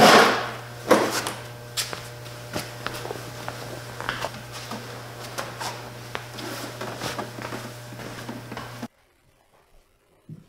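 Scattered knocks and bumps of wooden things being handled, with a loud one at the start and another about a second in, over a steady low hum; it all cuts off abruptly near the end.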